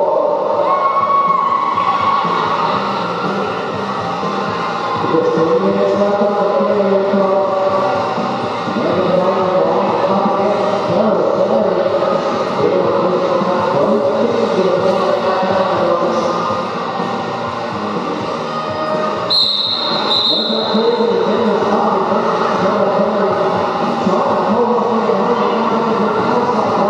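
Echoing sports-hall crowd noise at a roller derby bout: many overlapping voices shouting and chanting over the clatter of quad skates on the wooden floor. About nineteen seconds in, a referee's whistle is blown twice in quick succession.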